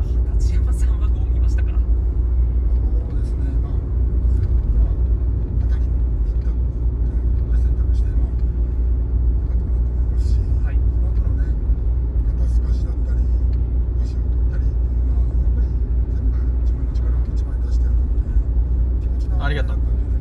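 Steady low rumble inside a car's cabin, with faint voices from the broadcast playing on the dashboard TV unit.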